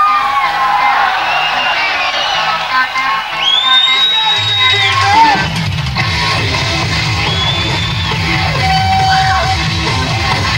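Live hard-rock concert recording of an electric guitar playing high, held notes that bend and glide in pitch. The bass and drums come in about five seconds in with a steady low rhythm.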